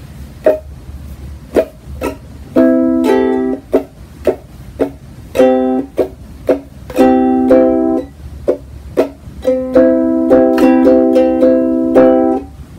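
Ukulele strummed by hand: short, choked strokes alternate with ringing chords, and near the end a longer run of quick repeated strums.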